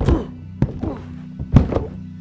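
Three heavy thuds on a door, the last one the loudest, over a low droning film score.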